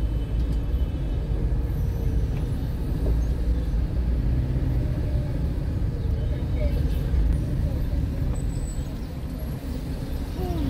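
Steady low rumble of slow city traffic and car engine heard from inside a moving car, with faint voices from the street.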